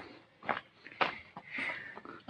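A few soft footsteps on stone steps, about half a second apart, in an otherwise quiet pause.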